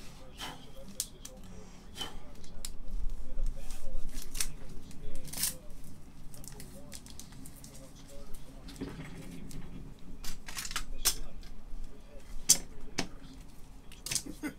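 Scattered sharp clicks and taps of trading cards and hard plastic card holders being handled on a tabletop.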